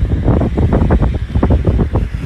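Wind buffeting a phone's microphone: a loud, gusty rumble.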